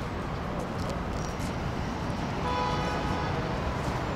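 Steady low outdoor city rumble with a horn sounding once, about a second long, a little past halfway through.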